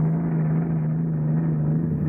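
Unlimited hydroplane running flat out across the water, its engine a steady drone that holds one even pitch. The sound is dull and muffled, with no treble.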